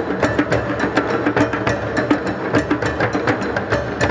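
Many djembes played together in a drum-circle jam: a dense, steady rhythm of hand-struck drum beats, several to the second.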